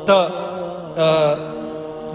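A man chanting in long held notes with a wavering pitch, two drawn-out phrases, as in a melodic religious recitation.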